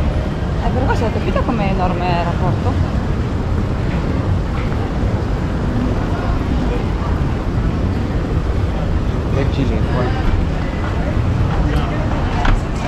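Airport terminal ambience: a steady low rumble, with indistinct voices of passers-by near the start and again near the end.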